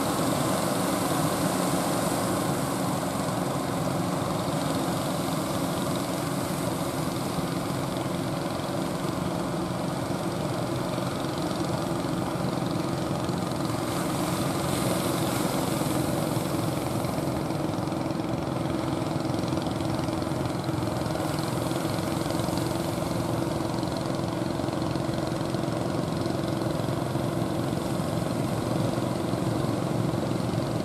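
Engines of small outrigger fishing boats running steadily, a low drone over the wash of breaking surf.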